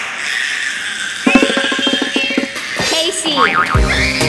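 Two young girls shrieking and laughing in excitement, with upbeat music starting about a second in and a quick steady beat running under it.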